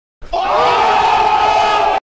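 Several voices yelling together in one long, held shout that rises briefly at the start, then is cut off suddenly.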